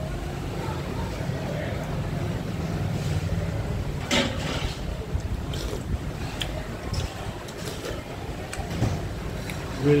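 Steady low rumble of street traffic with indistinct voices in the background, and a short noisy burst about four seconds in.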